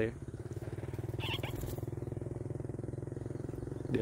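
Small motorcycle engine idling steadily, with a fast, even pulse.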